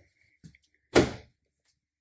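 A wooden cabinet door under a bathroom sink being shut with one sharp knock about a second in, after a couple of faint clicks.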